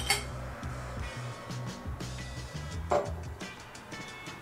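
Background music with two light glass clinks, one at the start and one about three seconds in, as filtrate is poured from a glass beaker into a glass test tube.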